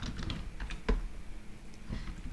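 Computer keyboard typing: a few scattered key presses, with one louder key strike a little under a second in.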